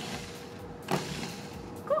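Food processor motor whirring in one short pulse through graham cracker crumbs and melted butter, stopping with a short knock about a second in.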